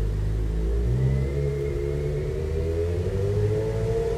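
An engine running, its pitch rising slowly and steadily.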